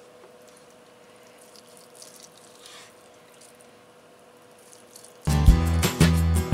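Soft, faint knife strokes as a chef's knife cuts through cooked beef tongue on a wooden cutting board, over a steady low hum. About five seconds in, loud background music starts abruptly.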